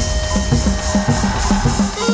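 Hát văn ritual music played instrumentally: a plucked lute over a quick, steady beat of drum and wood-block strokes.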